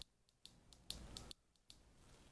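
Near silence: faint room tone with a few small clicks near the middle, twice cutting out to dead silence for a moment.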